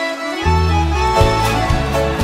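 Live band playing an instrumental song intro: accordion holding sustained notes, with bass and the rest of the band coming in about half a second in.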